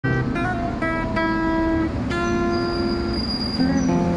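Acoustic guitar playing an intro: a few struck notes and chords in the first second or so, then a chord about two seconds in that rings out and fades.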